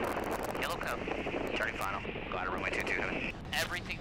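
Piper J-3 Cub's engine running steadily in the cockpit, with a voice talking over it.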